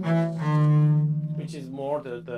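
Double bass bowed: a new note starts and settles into a long low held note with a steady, unwavering pitch, played without vibrato, which fades after about a second. A man's voice starts speaking near the end.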